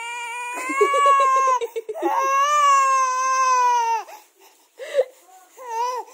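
A baby crying: two long wails of a second and a half or more each, the second falling slowly in pitch, then a few short sobbing cries near the end.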